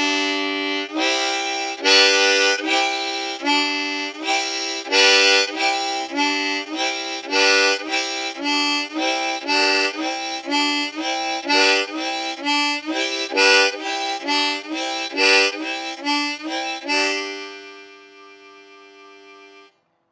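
Diatonic harmonica in C playing the train-whistle chord rhythm on the low holes, alternating draw and blow chords (draw 1-2-3, blow 1-2-3, draw 1-2, blow 1-2-3) at about two breaths a second. Near the end it settles on one held chord that fades out.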